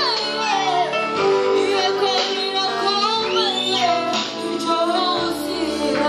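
A live worship song: high singing voices with vibrato, sliding between notes, over a sustained instrumental accompaniment. One voice rises and falls in a high glide about halfway through.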